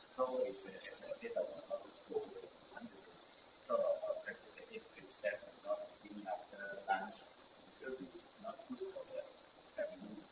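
Faint, distant speech of a questioner who is away from the microphone, over a steady high-pitched tone.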